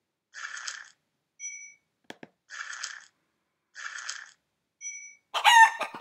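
Online scratchcard reveal sound effect: a short scratching hiss heard four times as the panels are uncovered, with a brief electronic beep after two of them and a single mouse click about two seconds in. Near the end comes a louder rooster-crowing sound effect.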